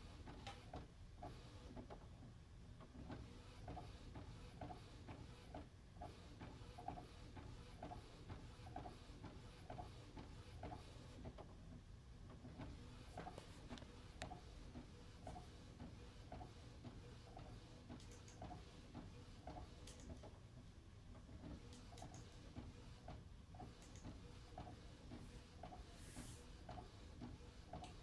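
Epson Stylus Photo P50 inkjet printer printing onto a CD/DVD: the print-head carriage shuttles back and forth in a quiet, regular ticking rhythm.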